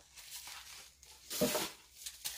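Rustling and crinkling of packaging as items are pulled out of a parcel, with one louder rustle about one and a half seconds in.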